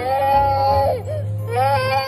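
High, drawn-out wailing cry: one long wail held at a steady pitch for about a second, then a second wail starting near the end.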